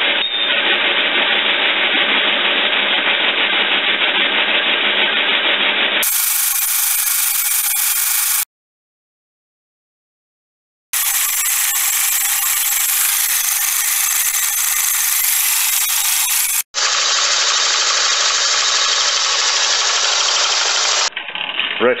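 A 1930s horizontal milling machine cutting a solid aluminium block: a loud, dense, steady cutting noise. It comes in edited stretches, with about two and a half seconds of silence just before the middle and a brief break about two-thirds in.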